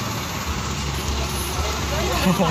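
Steady low rumble of a jeepney's engine and road noise, heard from inside the open passenger cabin.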